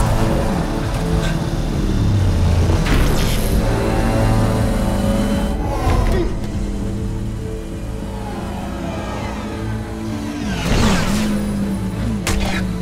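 Film score music under the hum and whine of futuristic light-cycle engines, with several swooshing pass-bys, one near the end with a falling pitch.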